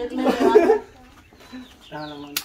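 A chicken clucking, one loud call lasting under a second near the start.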